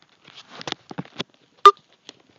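Handling noise from a handheld camera: a run of short, faint rustles and clicks, then one sharp, loud knock about a second and a half in.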